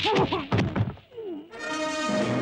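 Kung-fu fight sound effects: a few sharp punch and kick hits with short shouts, then a falling cry. About one and a half seconds in, a sustained chord of music comes in and holds.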